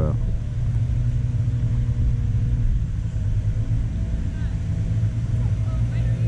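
A steady low rumble with a constant hum.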